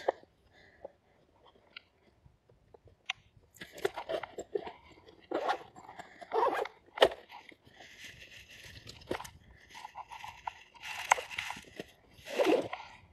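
Camera microphone rubbing and brushing against hoodie fabric: irregular rustling and scuffing handling noise that starts a few seconds in, with one sharp click about seven seconds in.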